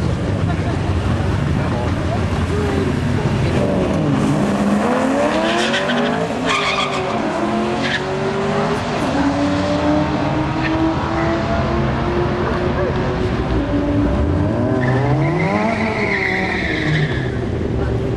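Drag-racing cars, among them a Ford XR8 ute with its V8, launching from the line and accelerating down the quarter mile. The engine notes climb in pitch and drop back at each gear change.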